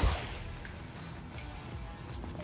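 A thrown cast net hitting the water: a sudden splash right at the start that fades into a soft wash, over background music.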